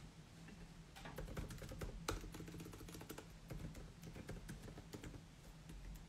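Faint typing: quick, irregular clicks of keys, over a steady low hum.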